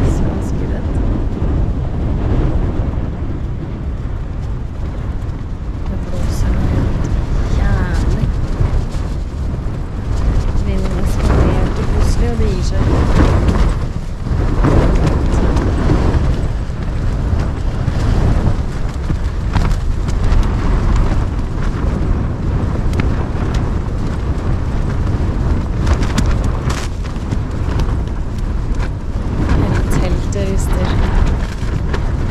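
Storm-force wind battering a tent, heard from inside: a loud, continuous low rumble of gusts with frequent sharp flaps and cracks of the tent fabric.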